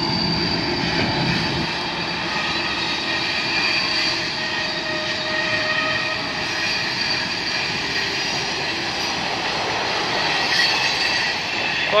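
Long freight train rolling slowly past, its cars' steel wheels on the rails giving a steady rumble with several sustained high-pitched squealing tones from the wheels.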